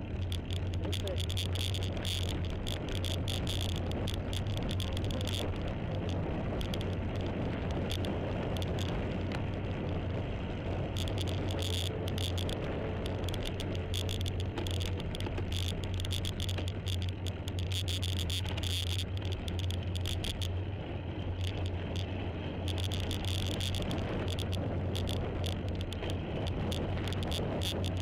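Onboard sound of a vehicle riding along a winding road: a steady low drone with wind rushing and crackling over the microphone.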